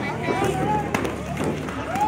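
Voices of people around a boxing ring, including a drawn-out call, with a few sharp knocks, the clearest about a second in.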